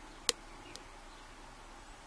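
Hook pick and tension wrench working the security pins of a brass Corbin 60mm shutter padlock, held in a false set: one sharp click a little after the start, then a much fainter one.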